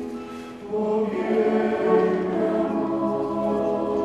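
Mixed choir of men's and women's voices singing in harmony, holding sustained chords. A short dip comes about half a second in, then the next phrase comes in fuller and louder.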